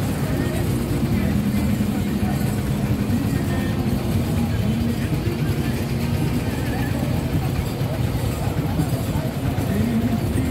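Outdoor street and crowd noise: a steady low rumble with voices and short held tones over it.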